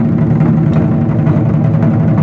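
A row of large Chinese lion-dance drums (tacked-head barrel drums) beaten together with sticks in a fast, dense, continuous rhythm.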